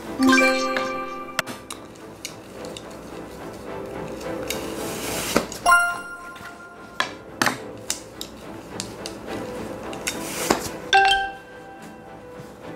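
Three bright chime stings ring out, one at the start, one about five and a half seconds in and one about eleven seconds in, each fading over a second or so, over soft background music. Between them come short swishes of silk divination flags being drawn and waved.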